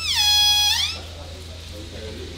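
Compressed air from a scuba tank cracked open into a rubber boat's inflation hose: a loud whistling hiss for about a second, its pitch dropping, holding, then rising again as it dies away. It is a leak check on the hose connection.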